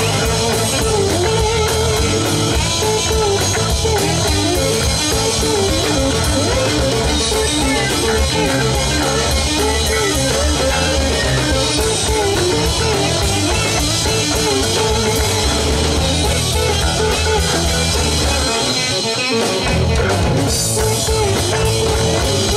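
Live rock band playing amplified electric guitars over a drum kit. The bass end drops away for a moment near the end, then comes back in.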